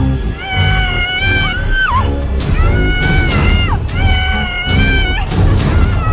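A woman screaming in four long, shrill cries, each held about a second and breaking downward at its end, as she is bitten by a zombie. Background music runs underneath.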